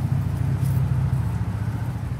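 A steady low mechanical hum, like an engine or machine running nearby.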